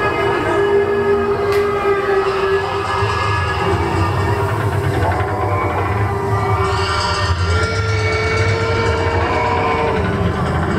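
Expedition Everest roller coaster train climbing its lift hill: a steady mechanical rumble with a constant hum, and the low rumble grows a few seconds in.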